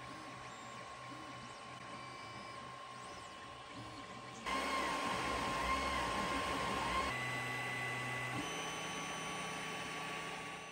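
Creality Ender-3 3D printer running a print: a steady fan hum under the whine of the stepper motors, which rises and falls in short repeated sweeps as the print head moves back and forth. It gets louder about halfway through.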